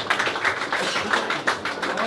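Applause from a small crowd: many individual hand claps, several a second, unevenly spaced.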